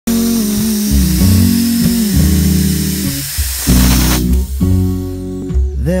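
Espresso machine steam wand venting with a loud hiss that cuts off about four seconds in, under background music with guitar. Singing begins at the very end.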